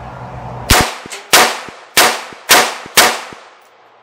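Five rapid shots from a CMMG 5.7×28 mm AR-style upper, about one every half second. Each is a sharp crack with a short ringing tail.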